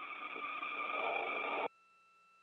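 Radio downlink channel hiss with faint steady tones in it, growing louder, then cutting off abruptly near the end as the station's video downlink drops out during a relay-satellite handover. A faint steady two-note test tone is left after the cut-off.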